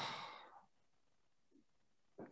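A person's short breath out, like a sigh, fading away within about half a second, then near silence.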